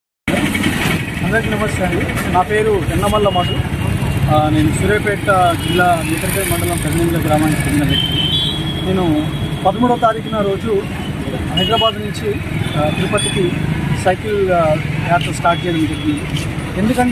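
A man talking over steady road-traffic noise on a busy street, with vehicle engines running throughout.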